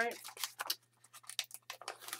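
A sheet of vellum paper crinkling and rustling as it is lifted off a sketchbook and handled, in a run of short crackles with a brief pause about a second in.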